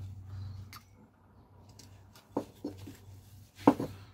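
Small carving knife making short slicing cuts into a green stick's bark and wood: about five separate brief scrapes and clicks, the loudest near the end.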